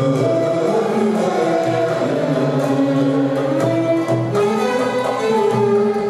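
Live Turkish art music: a male voice singing a sustained, ornamented melody into a microphone over a small ensemble of violin and plucked and bowed Turkish string instruments.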